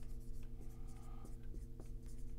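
Dry-erase marker writing on a whiteboard: faint, irregular scratching strokes and light taps as letters are formed, over a steady low hum.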